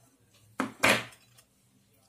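Steel spoon scraping and knocking against a steel bowl: two short clatters close together about a second in.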